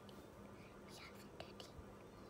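Near silence: room tone with a faint steady low hum and a little soft whispering.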